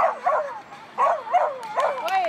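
A dog barking in short, high yips as it runs the agility course: two at the start, then three more from about a second in.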